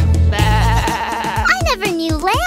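A cartoon lamb's bleat: one long, held 'baa' starting about half a second in, over a children's music track. A child's voice comes in near the end.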